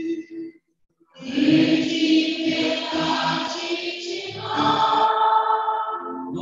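Church singing: a sung phrase ends, the sound cuts out completely for about half a second, then a loud, full blend of singing voices comes in and holds sustained notes.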